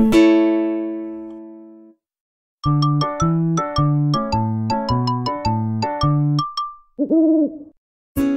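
The last chord of a children's song rings out and fades away. After a short pause, a brief logo jingle of quick, sharp notes over a bass line plays, followed by a single cartoon owl hoot near the end.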